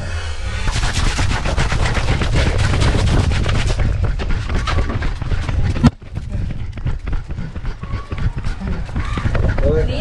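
Rapid clatter of knocks and rattles from a GoPro strapped to a running dog. The clatter is densest early on, breaks off abruptly about six seconds in, then carries on sparser and quieter.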